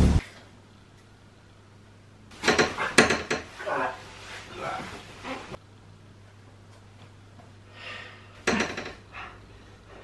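Household items clattering and knocking in a kitchen cupboard as someone crawls into it. There are two bursts: a longer one starting about two and a half seconds in, and a shorter one near the end.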